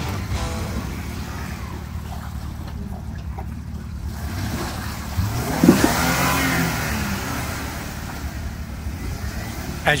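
Jeep Wrangler JK Unlimited Rubicon's engine running under load as it crawls through thick mud, revving up and back down about halfway through as the tyres churn. It lacks the speed to get over the mud and is stuck.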